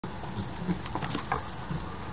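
A beagle's rapid, uneven footfalls as it runs across a dry grass lawn, a quick run of soft thuds and scuffs that stops just before it reaches the camera.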